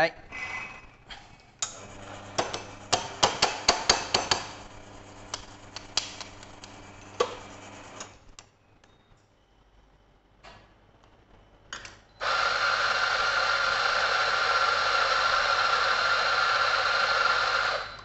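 Espresso preparation at a commercial espresso machine: a low motor hum with a quick run of clicks and knocks over the first few seconds, then a short lull. About twelve seconds in, a loud steady hiss of water or steam from the machine starts, runs for about six seconds and cuts off sharply at the end.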